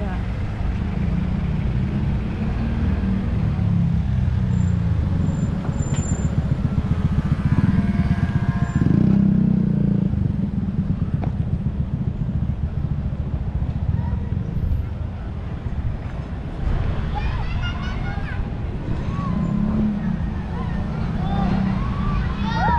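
Street ambience: a steady low rumble of road traffic, with passers-by talking in the last few seconds.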